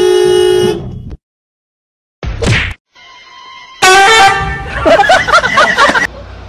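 Car horn sounding one steady blast of about a second, then cutting off. Later come a short sharp sound and, near the end, loud bending calls like voices or yowls.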